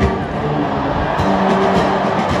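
A large all-brass-and-percussion military marching band playing sustained brass chords over drums, with a drum stroke at the start.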